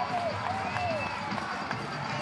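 Stadium crowd background noise, with a voice heard indistinctly for about the first second.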